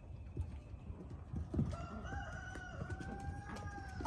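A rooster crowing once, a single drawn-out call of about two seconds that rises, holds level and drops away at the end.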